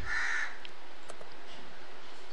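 One short, harsh, caw-like bird call in the first half-second, over a steady background hiss.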